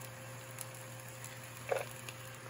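Steady hum of a kitchen range hood fan with faint sizzling of eggs in the pan, a couple of light ticks, and one short soft sound near the end.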